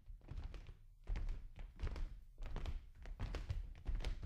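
Muffled knocks and thumps, several a second, over a low rumble: a GoPro Hero in its sealed waterproof housing jolting on its mount as the snowmobile and sled travel over a snowy trail.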